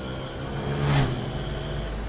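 Road traffic noise heard from a moving vehicle over a steady low hum. A vehicle rushes past, its sound swelling and fading about a second in.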